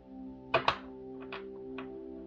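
Soft background music playing steadily, over a few light taps of tarot cards handled on a table: two sharp taps about half a second in, then fainter ticks.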